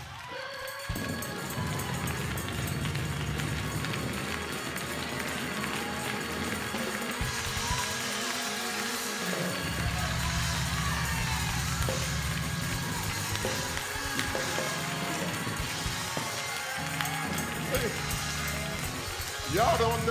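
Church instrumental music with held low chords that change every few seconds, under a mix of voices from the congregation.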